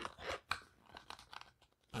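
Faint handling noise of clear vinyl tubing being pushed by hand onto a Sawyer Mini water filter: soft plastic clicks and rubbing, with one sharper click about half a second in.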